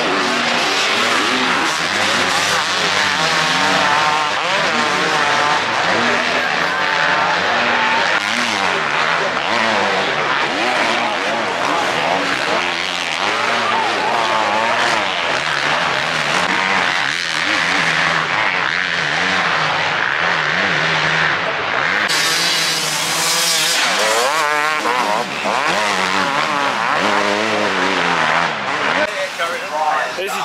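Several motocross bikes racing on a dirt track, their engines revving up and down as riders work through the ruts and jumps. About two-thirds of the way in, a harsher, louder rush lasts a couple of seconds.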